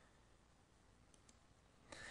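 Near silence: room tone, with two faint clicks a little over a second in and a faint hiss coming up near the end.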